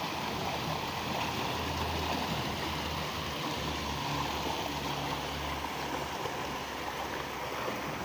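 Shallow mountain river rushing over rocks and a boulder, a steady, unbroken water noise.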